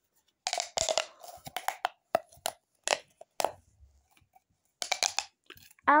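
Plastic pop tubes being stretched and bent, crackling in several short bursts of quick pops with pauses between.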